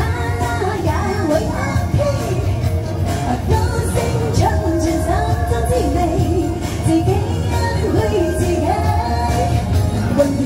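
A woman singing a pop song into a handheld microphone over a karaoke backing track, her voice amplified through the sound system.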